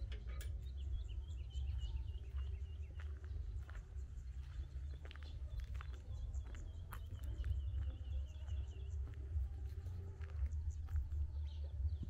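Small birds chirping in two long runs of quick, repeated high notes, over a steady low rumble.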